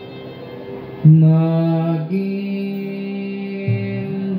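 Recorded devotional chant music: a steady drone, then about a second in a loud, long-held chanted note that steps up in pitch a second later and holds steady.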